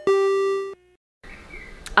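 The lower second note of a two-note electronic chime, like a doorbell's ding-dong, rings and fades, then cuts off under a second in. A brief silence and faint room tone follow.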